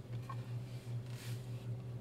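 A steady low hum under quiet room noise, with no distinct knocks or clicks.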